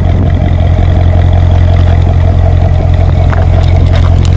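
Loud, steady deep rumble of a car engine idling, holding one pitch throughout.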